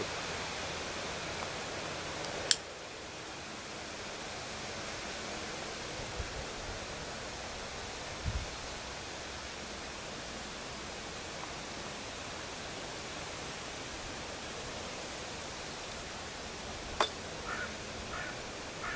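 Steady outdoor background hiss, with a sharp click about two and a half seconds in and another near the end.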